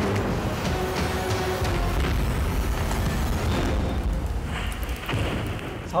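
Dramatic exhibition soundtrack played over a surround sound system: music with deep rumbling booms, steady in level throughout.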